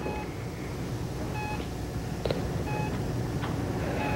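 Hospital patient monitor beeping at a steady pace, a short electronic tone about every second and a half, three beeps over a low steady hum.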